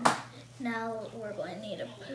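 A single sharp tap right at the start, then a young girl's voice talking.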